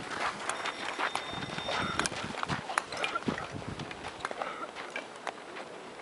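Outdoor ice rink ambience: scattered irregular clicks and knocks with faint distant voices, and a thin high tone that lasts for about a second and a half near the start.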